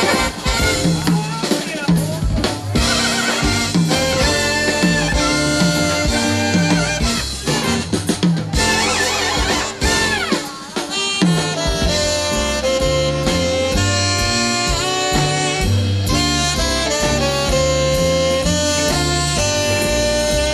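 Live swing band playing an instrumental passage: saxophones and brass over a drum kit and upright bass keeping a steady dance beat. The music dips briefly about halfway through, then carries on.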